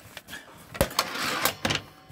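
A sharp knock, then about half a second of fabric and wood scraping, and a couple of clicks, as a caravan seat cushion and the wooden seat-base lid beneath it are lifted.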